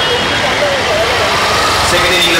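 Loud, steady background noise with indistinct voices faintly running through it.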